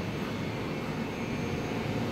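Steady workshop background noise: an even rush with no distinct knocks, clicks or tones, of the kind a running ventilation or air-handling fan gives.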